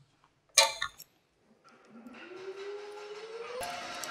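An allen wrench clinks once against the steel lap joint screw and shaft coupling about half a second in, with a short metallic ring. In the second half comes a faint tone that slowly rises in pitch, then cuts off just before the end.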